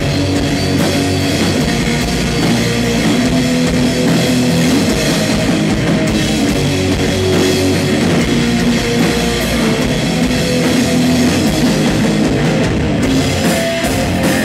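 Sludge/noise-rock band playing live: distorted electric guitars, bass and a drum kit, loud and continuous.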